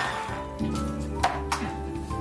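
Background music with sustained notes over a steady bass line, with two short sharp strokes a little past the middle.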